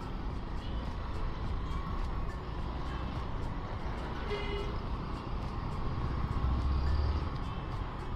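Steady road and wind noise with a low engine hum from a scooter being ridden along a street, recorded from the rider's position.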